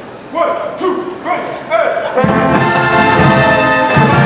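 A few short shouted calls, then a full marching brass band of trombones, trumpets and sousaphones comes in loudly about two seconds in and keeps playing.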